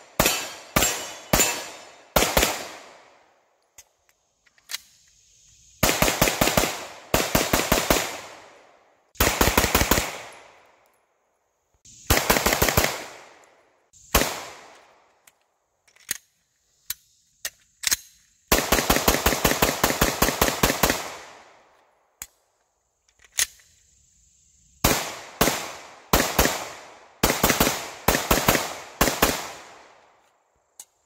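Semi-automatic pistol fired in rapid strings of shots, several strings in all, separated by pauses. The longest and fastest string comes past the middle. Faint clicks from handling the pistol fall in the quiet gaps.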